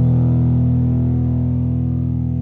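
Rock song music: a sustained distorted electric guitar chord ringing out and slowly fading.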